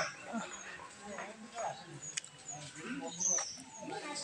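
Faint background of distant voices, with scattered short high chirps of small birds, one of them a little louder about three seconds in.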